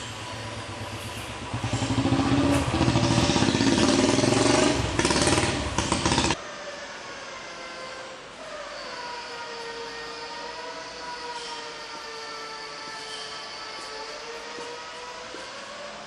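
Motor vehicle engine noise: a loud engine sound cut off abruptly about six seconds in, then a quieter steady engine hum whose pitch slowly wavers.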